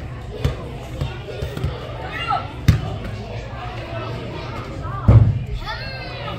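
Several thuds of an indoor soccer ball being kicked and striking the arena's boards, the loudest about five seconds in, over children's shouts and spectators' voices in a large hall.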